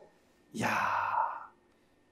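A man's breathy, sigh-like exclamation "ya!" (Korean for "wow"), about a second long, voiced only faintly, as an expression of awe.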